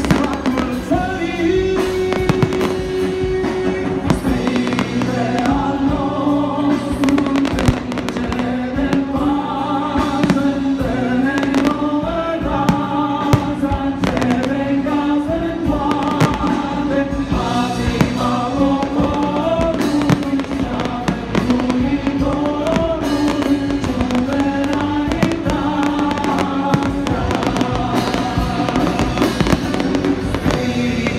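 Fireworks display: frequent sharp bangs and crackles of bursting shells, irregularly spaced throughout, over loud music.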